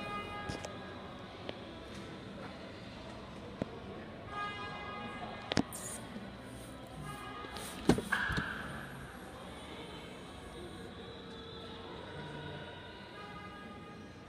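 Car door of a Fiat Linea sedan unlatching with a sharp click and being pulled open about eight seconds in, after a smaller click a couple of seconds earlier. Faint music and voices carry on underneath.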